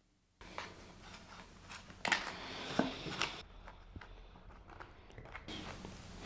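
Plastic candy-kit mould tray and packets handled on a tabletop: faint rustling with a few light clicks and taps, the sharpest about two seconds in.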